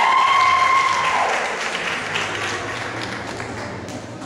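Audience applauding and cheering, with one long high call that rises and then holds over the clapping for about the first second. The clapping is loudest at the start and fades toward the end.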